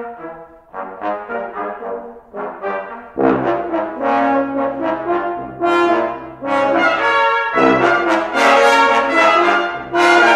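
Brass quintet of trumpets, French horn, trombone and tuba playing a concert piece. Short detached notes come first; about three seconds in the full ensemble enters louder over sustained low tuba notes and builds toward the end.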